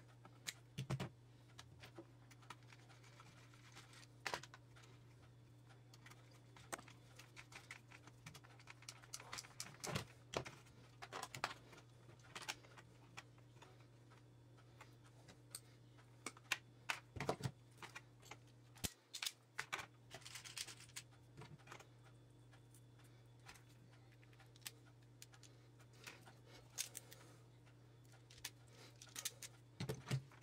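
Faint, irregular clicks and scrapes of hand tools and electrical wire being handled: a ferrule crimping tool and pliers working a blue wire. A steady low hum runs underneath.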